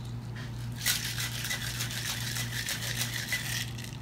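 Ice rattling in a metal cocktail shaker as a creamy cocktail is shaken hard, a rapid even clatter that starts about a second in and stops shortly before the end.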